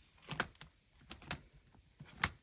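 Clear plastic zip-pocket pages of a ring-binder cash-envelope planner being turned by hand, giving two short clicks, about half a second and a second and a half in.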